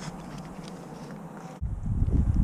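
Faint, steady background noise with no distinct event; about one and a half seconds in it cuts abruptly to a louder low rumble.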